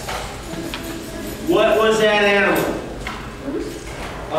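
Recorded beaver vocalisation played over a loudspeaker: one long whining call about a second and a half in, its pitch rising and then falling, a sound that is monkey-like.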